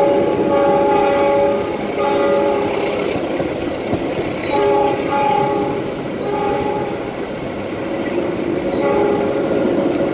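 A passenger train's locomotive horn sounds in several blasts as a multi-note chord: one long blast at the start, shorter ones at about two, five and six and a half seconds, and fainter ones near the end. Under it runs the steady rumble and rail clatter of the moving train, heard from a carriage window.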